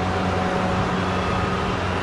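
A steady low hum with an even hiss of background noise, unchanging throughout.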